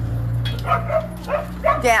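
Young border collie whimpering and yipping in a few short, high, bending calls over a steady low hum.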